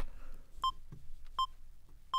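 FL Studio's metronome counting in before recording: two short electronic beeps about three quarters of a second apart.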